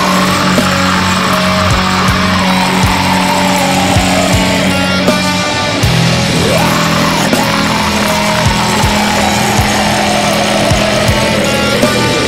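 Black metal recording: a dense wall of distorted guitars and drums, loud and steady. A high melodic line arches up and down twice over held low notes, and the chord changes about six seconds in.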